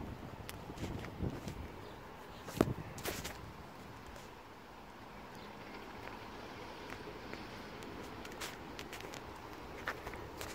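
A city bus running at low speed across the depot yard, heard as a steady low rumble without a clear engine note, with light footsteps and a single sharp knock about two and a half seconds in.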